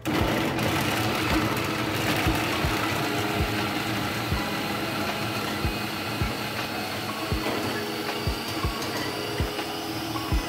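Arnica Prokit 444 food processor switched on and running steadily, its blade chopping ginger and garlic into a paste, with irregular knocks throughout. The motor starts suddenly right at the beginning.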